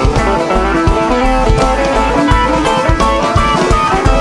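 Live band playing an instrumental section of a country-rock song: banjo and electric guitar over upright bass and drums, with a steady beat.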